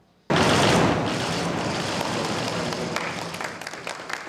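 A crowd applauding. The applause starts suddenly and slowly dies down.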